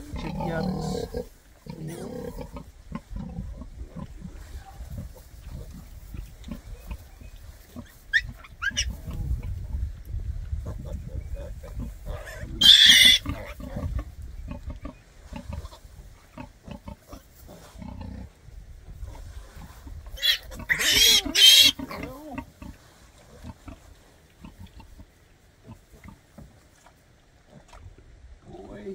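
Newborn piglets squealing shrilly as they are handled in the straw: one squeal about halfway through and a broken run of several squeals a little later. A sow grunts low near the start, with straw rustling in between.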